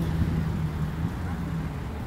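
Road traffic: car engines running past as a steady low rumble, with a held low hum that fades near the end.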